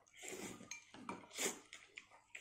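Faint slurping of noodles from a porcelain bowl, in two short bursts, with light clinks of chopsticks against the bowl.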